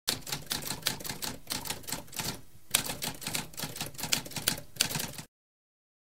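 Typewriter typing: a rapid run of key strikes with a brief pause about two and a half seconds in, cutting off abruptly a little after five seconds.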